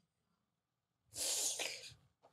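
A single sharp, breathy vocal burst from a person, like a sneeze or a huffed laugh, lasting under a second and starting about halfway in after near silence.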